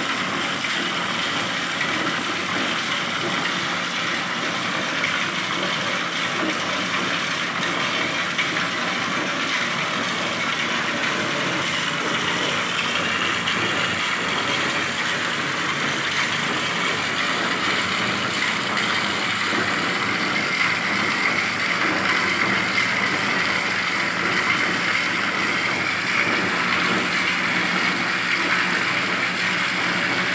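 Motorised knapsack sprayer running steadily, its pump forcing anti-termite chemical through the hose and out of a rod lance pushed into the soil, with a steady hiss of liquid.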